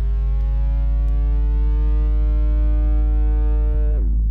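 Electronic synthesizer music: a bright tone rich in overtones slowly rising in pitch over a steady deep bass drone, then sweeping sharply down in pitch at the very end.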